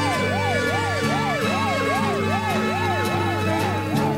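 An ambulance-style siren wails up and down about twice a second over theme music with a pulsing bass line.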